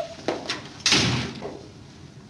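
An office door being handled and shut: a couple of latch clicks, then the door closing with a hard bang about a second in.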